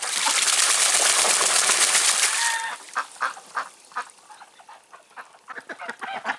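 White Muscovy duck bathing in a tub of water: about two and a half seconds of loud splashing as it thrashes and beats its wings, then fainter drips and small splashes as it settles.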